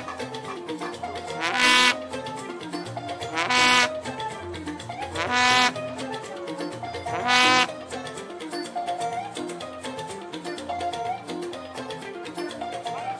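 Live Fuji band music with a stepping keyboard-like melody over percussion. A loud, short held note cuts in four times, about every two seconds, then stops about seven and a half seconds in.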